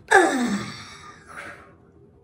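A man's loud, breathy moaning sigh whose pitch falls steeply over about half a second, followed by a softer breath about a second later.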